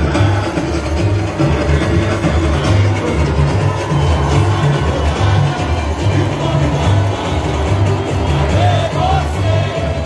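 Samba-enredo played by a samba school's bateria, its surdo bass drums keeping a steady beat under a sung melody, with crowd noise from the stands.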